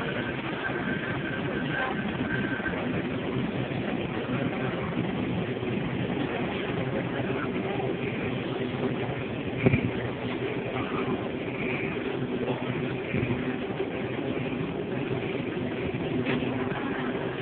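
Supermarket background noise: the steady hum of refrigerated display cases and ventilation, with indistinct shoppers' voices. One sharp knock sounds about ten seconds in.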